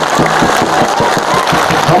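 Crowd applauding, a dense clatter of many hands clapping.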